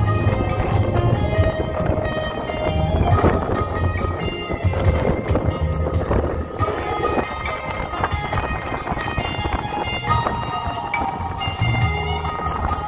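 Instrumental interlude of a pop ballad backing track, with a steady bass beat under held melody lines and no vocal.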